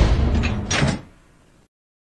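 A door slamming shut, one sharp stroke a little under a second in that dies away quickly.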